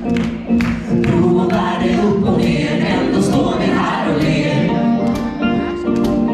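A roomful of people singing a song together in unison, over a strummed acoustic guitar keeping a steady beat.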